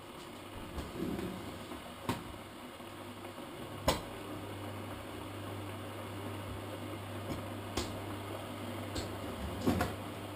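Kitchen worktop handling while hot cross buns are readied for a toaster: a few sharp clicks and knocks, the sharpest about four seconds in, over a steady low hum.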